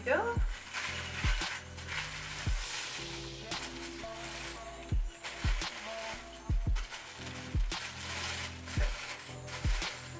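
Wrapping paper crinkling and tearing as a gift is unwrapped by hand, over background music with a low, steady beat.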